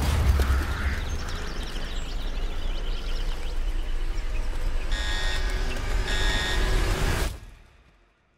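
Film-trailer sound design: a steady low rumble under a noisy haze, with two short high electronic beeps about a second apart past the middle. Near the end everything fades out to silence.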